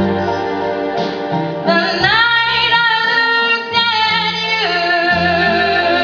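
A young woman singing into a handheld microphone over keyboard accompaniment, holding one long high note from about two seconds in until nearly five seconds, swooping up in pitch as it starts.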